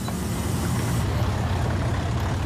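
A garbage truck's engine running, a steady low rumble with a hiss over it.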